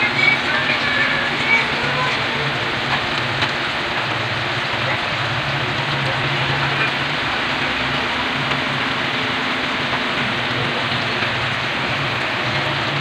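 Pork and potatoes in sauce sizzling steadily in a wide metal pan, over a low steady hum.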